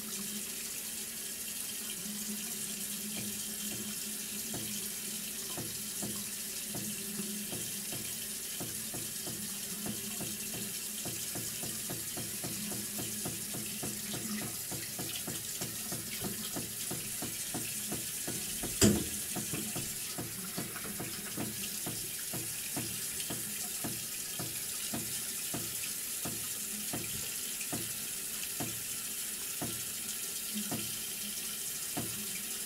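Bathroom tap running into a sink while water is splashed over the face and head in quick, repeated handfuls. One sharp knock sounds about two-thirds of the way through.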